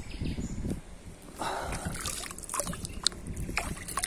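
River water sloshing and trickling against a rock at the bank. There is low rumble in the first second and a scatter of small clicks and knocks in the second half.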